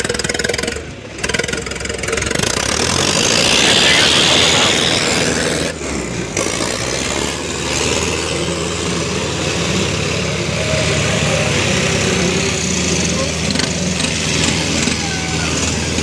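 Tractor diesel engines of a New Holland 5620 and a Sonalika, running hard under full load while chained together in a tug-of-war, with tyres scrubbing on the tarmac. The sound swells loudest a few seconds in.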